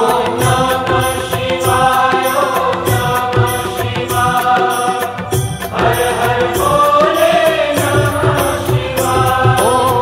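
Hindu devotional mantra chanted to music, voices over a steady percussion beat.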